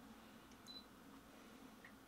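Near silence with faint sounds from a Canon EOS R6 mirrorless camera held to the eye: a soft click about half a second in, then a brief high beep.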